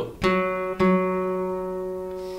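Acoustic guitar: the fourth (D) string fretted at the fourth fret, an F#, plucked twice with the index finger about half a second apart, each note ringing on and slowly fading.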